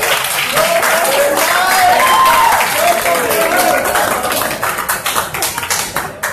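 Audience applauding, with a voice calling out over the clapping; the applause thins out near the end.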